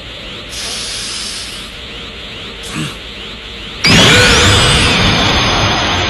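Anime sound effect of a Super Saiyan energy aura powering up: a steady hiss, then about four seconds in a sudden, much louder rush as the aura flares, easing off slowly.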